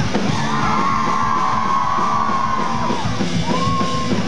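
Rock band playing live, with drums and electric guitar and a long held high note over the band from about half a second in to three seconds, then a shorter one near the end.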